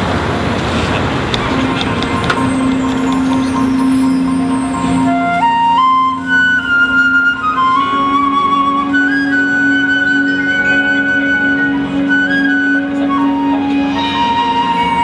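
Opening of a marching band show: a steady low held note begins early, and about five seconds in a slow, high, flute-like melody of long held notes enters above it, stepping up and down in pitch. Crowd noise fades out in the first second or two.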